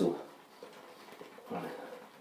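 Badger shaving brush working shaving soap in a metal bowl, faint and soft, as water is worked in to turn the paste into a creamy lather. About a second and a half in there is a brief, faint voiced sound.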